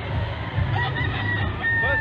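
A rooster crowing once, starting less than a second in, ending on a long held note that falls slightly.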